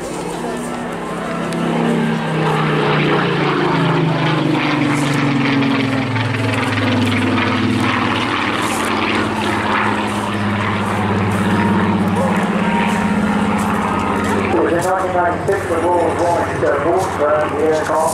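Rolls-Royce Griffon V12 engine of a Supermarine Spitfire PR Mk XIX flying overhead. Its drone slides down in pitch as the aircraft passes, then holds a steady note; a man's voice joins near the end.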